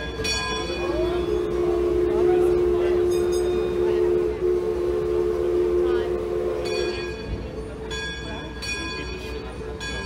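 Mark Twain Riverboat's steam whistle blowing one long two-note blast of about six seconds, with a bell ringing before and after it.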